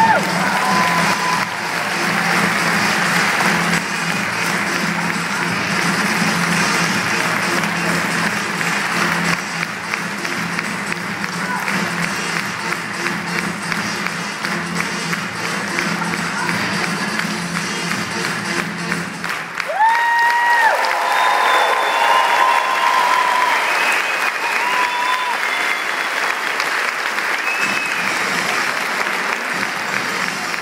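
Audience applause over loud, upbeat music. About twenty seconds in, the music's bass drops out and high held notes that slide in pitch take over.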